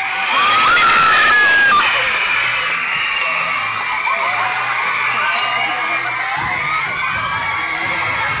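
A crowd of children screaming and cheering, loudest in the first two seconds and then sustained, over music with a steady low beat.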